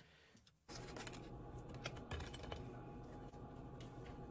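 Faint clinks and scrapes of a spoon spreading refried beans into flat-bottom taco shells on a plate, starting about a second in over a low steady hiss, with a few sharp clicks.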